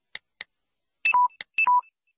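Two short keypress clicks from a smartphone, then two electronic two-note beeps about half a second apart, each a high note dropping to a lower one.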